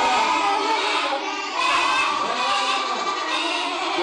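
A class of children calling out together, many young voices overlapping.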